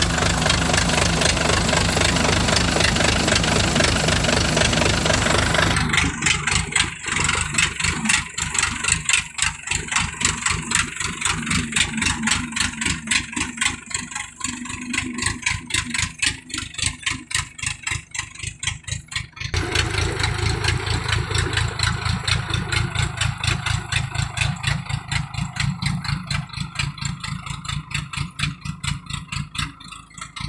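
Engine of a tracked farm carrier loaded with rice bags running steadily. About six seconds in, the sound changes abruptly to a rapid, even pulsing beat, which grows louder again near twenty seconds in.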